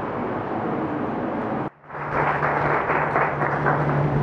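Steady noisy ambience of a crowded room. Just before two seconds in, an edit briefly cuts the sound. After it the ambience comes back louder, with a steady low hum.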